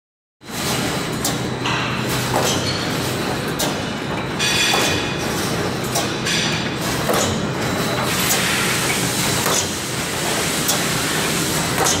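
Automatic welded wire mesh machine running: a steady hum and din of resistance welding, broken by repeated clanks as the electrode row strikes and the mesh is indexed forward.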